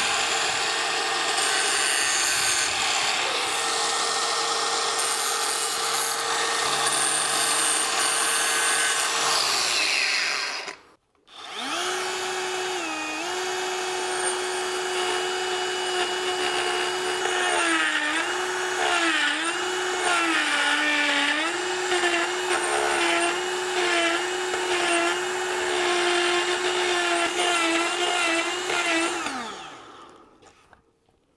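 Die grinder with a small hard disc running at high speed, grinding the burr off the end of a steel pipe; its whine dips in pitch each time it bears into the metal. It stops for about a second a third of the way in, then runs again and winds down near the end.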